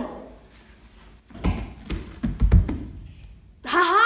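Dull thuds of a child's body on a rug-covered floor, two clusters about a second apart, as he rolls and sits up; near the end a loud, drawn-out child's voice cuts in.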